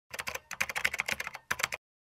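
Computer keyboard typing sound effect: quick key clicks, about a dozen a second, in three short runs with brief pauses, cutting off abruptly near the end.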